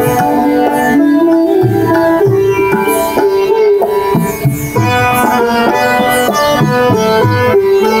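Live Hindustani instrumental ensemble: sitar, bansuri flute and harmonium carry the melody over a steady tabla rhythm.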